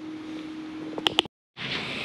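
A steady background hum with faint noise, two quick sharp clicks about a second in, then a brief dead silence before the background returns.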